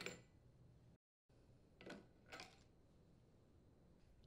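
Near silence, with a few faint clicks and clinks of parts being handled: once near the start and twice around the middle.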